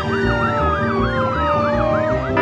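A fast warbling siren, its pitch rising and falling about five times a second, over background music with a steady beat.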